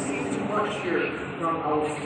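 Indistinct speech over a steady background hum.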